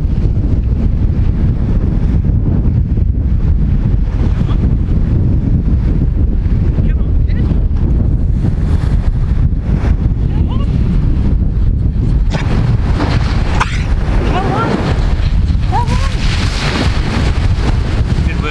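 Strong wind buffeting the microphone, a loud, steady low rumble, with sea surf washing in behind it that grows more hissy in the second half.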